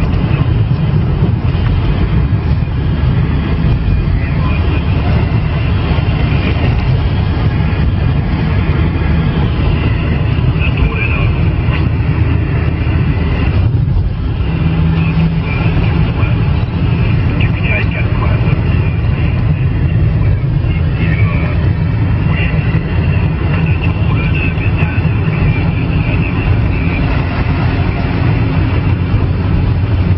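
CB radio receiver on the 27 MHz band giving out a steady loud hiss of static, with a weak, distant station's voice faintly coming through the noise. The noise dips briefly about fourteen seconds in.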